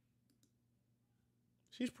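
Two faint, short computer mouse clicks, then a man's voice begins speaking near the end.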